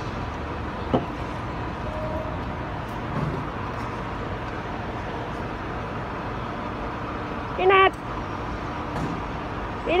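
Steady hum of road traffic from a nearby street, with a single click about a second in and a short called word near the end.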